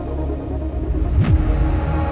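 Vocal trance music in a sparse passage: a deep, sustained bass rumble with a short swooshing sweep effect that rises and falls about a second in.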